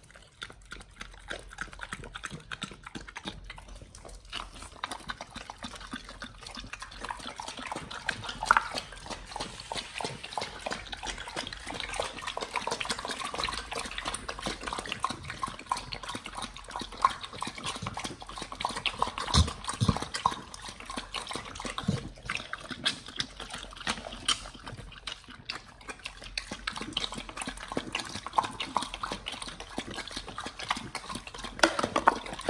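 Pit bulls lapping liquid from a plastic tray and licking a yogurt cup: a fast, continuous run of wet laps and licks, with an occasional louder click.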